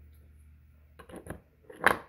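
Light handling clicks about a second in, then one sharp plastic click near the end as the charging cable is unplugged from the phone.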